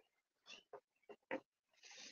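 Near silence with a few faint short clicks and a soft breath near the end, picked up by a speaker's microphone on a video call.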